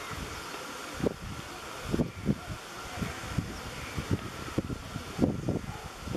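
Wind buffeting the microphone in irregular low gusts and thuds from about a second in, over steady outdoor background noise.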